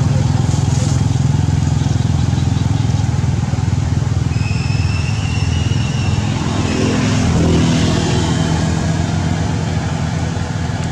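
Steady low engine rumble of a motor vehicle running nearby, with a brief thin high whistle-like tone about four to five seconds in.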